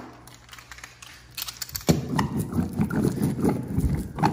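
Wallpaper seam roller run back and forth over a seam, a quick rattling clatter that starts about two seconds in. The roller is pressing down a seam edge where the paste has gone a little dry.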